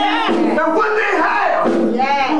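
A man preaching loudly into a microphone in a half-sung, chanted cadence with drawn-out pitches, and a congregation's voices calling along.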